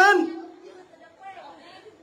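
A man's lecturing voice draws out the end of a word and fades, followed by a pause with only faint background sound.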